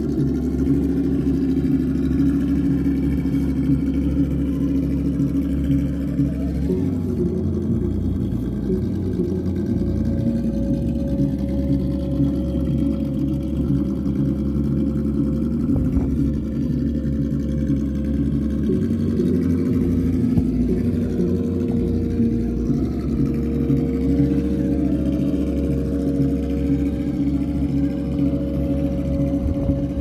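Simulated truck engine sound played from a Sense Innovations ESS-Dual+ sound module on a RedCat Gen8 RC crawler, running steadily with its pitch rising and falling a few times as the throttle changes.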